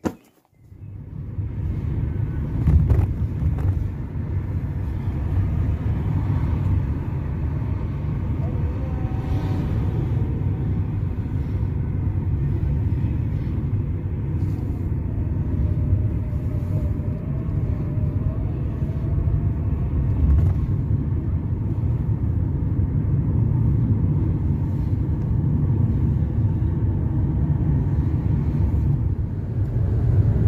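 Steady road and engine rumble inside the cabin of a moving car, starting about half a second in and running on evenly.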